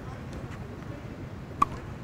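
A single sharp tennis racket strike on the ball about one and a half seconds in, with a short ringing ping from the strings, over a steady background hiss.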